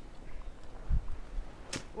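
A long wooden stick being swung to beat down brambles on a riverbank: a dull low thud about a second in, then a short sharp swish shortly before the end.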